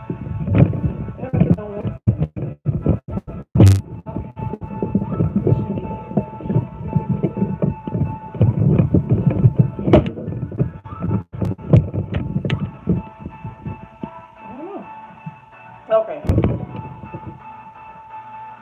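Background music playing under bumps, rubbing and clicks of a phone being handled and repositioned, with one sharp knock about four seconds in and another near the end.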